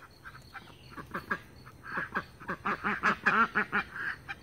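Domestic ducks quacking in a run of short quacks, sparse at first and then several a second from about halfway through.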